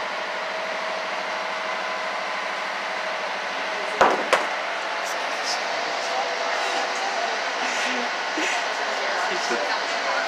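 A harbor cruise boat's engine running steadily, a constant hum with water and hull noise. Two sharp knocks come close together about four seconds in.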